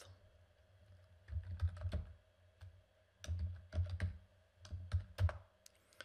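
Typing on a computer keyboard: three short bursts of keystrokes after a quiet first second.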